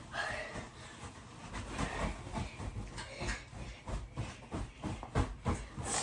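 Irregular soft thumps and rustling of a person getting up and stepping about on a mattress, with the louder thuds about two seconds in and near the end.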